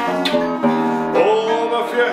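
Live Wienerlied music: a double-necked Viennese contraguitar (Schrammel guitar) plucked and strummed over a button accordion's sustained chords. In the second half a voice holds wavering sung notes.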